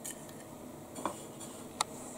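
Hands pressing breadcrumbs onto raw chicken strips on a plate: a faint crumb rustle with a few light clicks, and one sharp click near the end.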